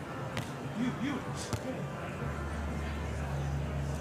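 Stadium crowd murmur around a beach volleyball court, with two sharp hand-on-ball hits about a second apart as the ball is served and passed. A low steady hum comes in about halfway.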